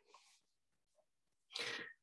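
Near silence on a video-call line, then near the end a short, breathy sound from a man's voice lasting under half a second.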